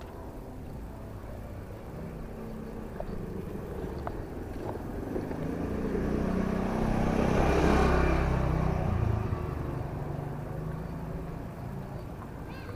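A motor scooter approaching and riding past close by. Its engine grows steadily louder, is loudest about eight seconds in, then fades quickly as it goes by.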